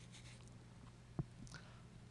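Near silence: room tone with a steady low hum, and one soft knock a little past a second in.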